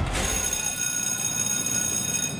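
Racecourse starting-gate bell ringing as the stalls spring open: a sudden clash, then a steady, continuous high ringing.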